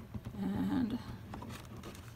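Light handling of a vinyl placemat on a wire shower caddy: a few faint clicks as it is fitted onto the hooks, with a short, low, wavering hum-like voice sound about half a second in.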